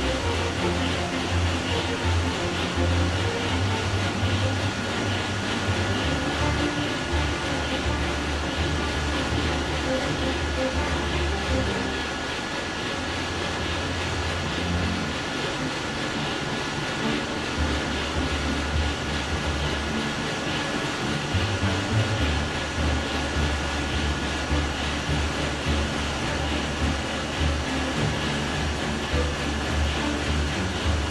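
Engine-room noise of a huge low-speed two-stroke marine diesel, the Wärtsilä-Sulzer RTA96-C, running: a loud, continuous deep rumble that swells and fades every few seconds, with steady high whines over it.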